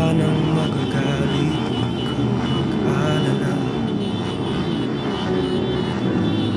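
A group of motorcycle engines running together in a steady, continuous hum, with people's voices over it.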